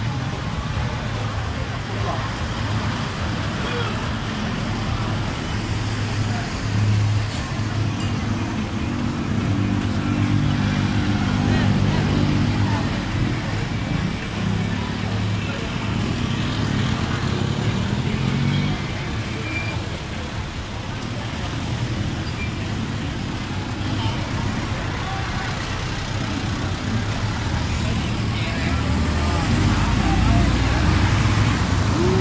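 Busy street traffic: cars, taxis and a van running past close by at low speed, with a vehicle engine loud and near for a stretch in the middle. Voices of people on the street mix in.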